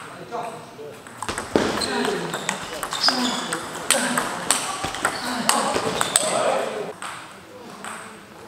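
Table tennis rally: the plastic ball clicking off bats and table in a steady back-and-forth of about two hits a second, with voices in the hall behind.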